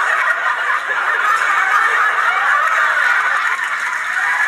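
Studio audience laughing steadily after a punchline, heard through a television's speaker.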